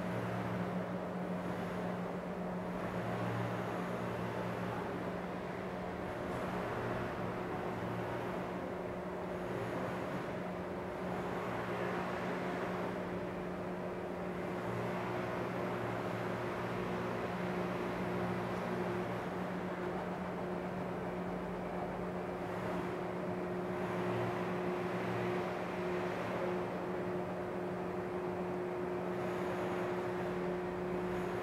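Z-axis lift drive of an Atlas-1311 UV flatbed printer running steadily as the carriage beam lowers, a continuous mechanical hum. A higher tone grows stronger in the second half.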